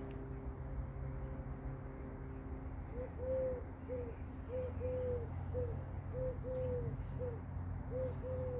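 A dove cooing: a rhythmic phrase of short and longer low notes, repeated over and over, starting about three seconds in, over a steady low hum.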